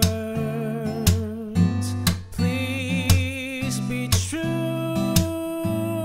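Acoustic guitar fingerpicked through a Dm7–G7–Cmaj7 chord progression, a plucked chord about every second, with a singing voice holding long notes with vibrato over it.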